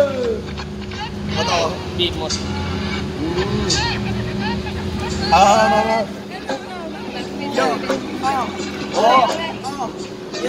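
Several men's voices talking and calling out over a steady low mechanical hum, like an idling motor, that drops away in the last few seconds.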